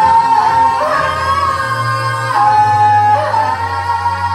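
Two male voices singing a duet into microphones, holding long, high belted notes that shift pitch every second or so, over a backing track with a steady low bass.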